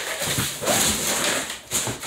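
Cardboard boxes scraping and rubbing against each other as an inner box is pulled out of a larger shipping box, with a strained grunt of effort.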